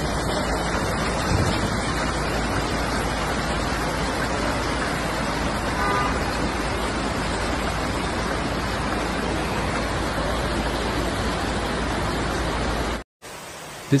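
Muddy floodwater rushing through a city street in a torrent: a loud, steady rush that stays even throughout. It cuts off about a second before the end.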